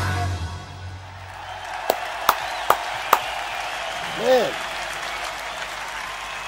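A live hard-rock band's final chord rings out and dies away, and a concert crowd applauds and cheers. About two seconds in come four sharp, evenly spaced hand claps close to the microphone, and a short rising-and-falling voice sound follows a little after four seconds.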